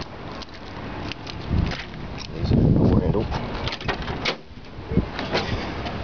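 A 1977 Oldsmobile Cutlass Supreme's door being opened by hand: several clicks and knocks from the handle and latch, and a short, louder creak from the door about two and a half seconds in.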